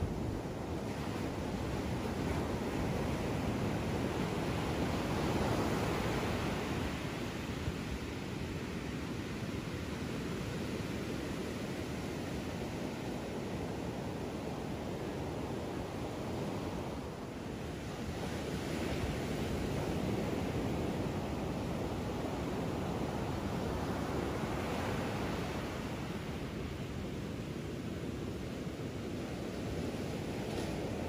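Ocean surf breaking and washing up a sandy beach: a steady rushing that swells and eases as each wave comes in.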